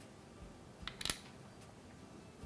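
Small colour pot's lid being handled and set down, giving a few light clicks about a second in.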